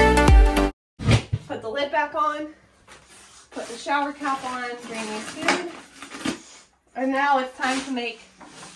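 Electronic background music with a steady beat stops abruptly under a second in. After it come a few clanks of a galvanized metal trash-can lid and plastic feed buckets being handled, with an indistinct voice on and off.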